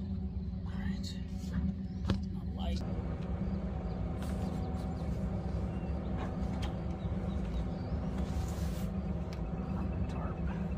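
Steady low mechanical drone from a paper mill's machinery, holding the same pitch throughout, with scattered rustles and knocks of gear being handled in a backpack.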